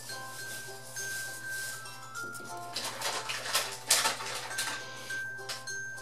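Background music with a repeating melody of held notes. About halfway through comes a short stretch of clicking and rattling from small plastic toys being handled and set down on the table. The loudest click falls just before the four-second mark.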